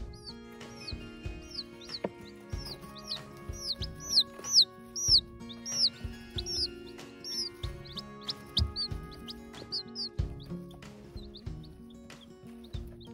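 Baby chicks peeping: a run of quick, high cheeps that each fall in pitch, loudest and thickest in the middle and thinning out near the end, over background music.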